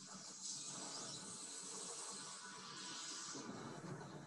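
A steady hissing rush of noise. It swells about half a second in and eases off after about three and a half seconds.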